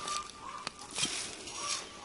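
A sharp steel hand trowel digging into sandy soil and dry leaf litter: a few short scraping, crunching strokes with sharp clicks between them.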